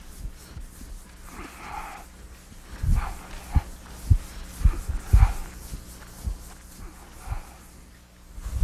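Eraser swishing across a chalkboard in repeated strokes. From about three seconds in, dull low thumps come at irregular intervals of about half a second to a second.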